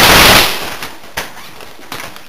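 A single loud bang, like a firecracker or pyrotechnic airsoft grenade, at the very start: a half-second blast that dies away over about a second. Two sharp clicks follow in the second half.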